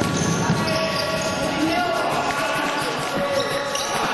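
Indoor futsal play on a wooden court: sneakers squeaking on the floor, the ball being kicked and footsteps, with players' voices calling out, all carried by the hall's echo.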